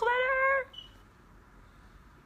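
A woman's voice exclaiming the word "glitter!" in a high, drawn-out tone for about half a second.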